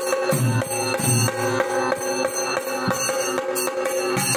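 Traditional Indian festival drumming in a quick, steady beat, with a sustained held note from a wind instrument over it.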